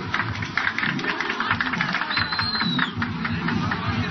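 Guests clapping along to the dance at a wedding, many sharp claps in a loose rhythm over a low beat of the dance music, with a brief high whistle in the middle. The sound is a worn camcorder soundtrack.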